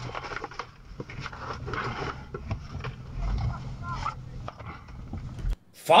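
Dashcam audio from inside a stopped car: a steady low engine hum with faint voices and small knocks, cutting off abruptly near the end.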